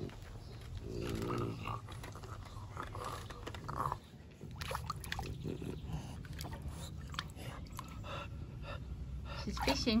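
A French bulldog chewing and biting an octopus toy in shallow water: an uneven run of short crunchy clicks from its teeth that fills the second half.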